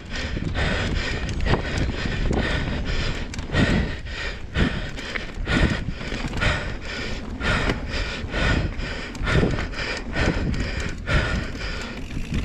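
Mountain bike ridden fast down a dry dirt trail: tyres running over dirt and the bike clattering over bumps in a stream of irregular knocks, with wind noise on the microphone.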